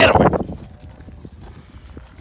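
A brief loud voice sound at the very start, then faint footfalls and rustling on dry grass as the phone is carried along at a run.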